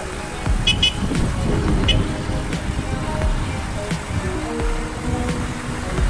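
Small single-cylinder motorcycle riding in city traffic: a steady rumble of engine and wind on the microphone, with background music over it. Two short high chirps come about two-thirds of a second in.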